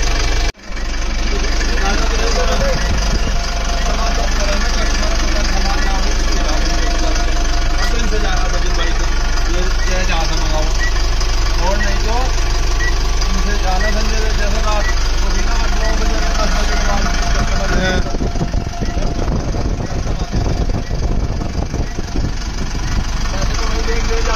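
Tata 1109 bus's diesel engine idling steadily, running again after a replacement ECM and new starter and power relays were fitted, with a brief break in the sound about half a second in.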